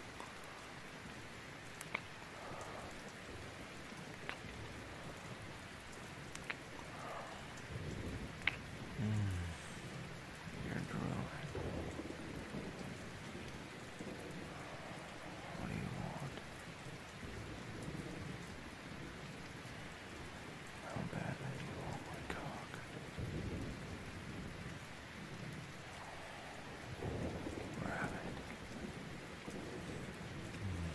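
Steady rain with low rolls of thunder swelling up several times, and a few sharp clicks scattered through it.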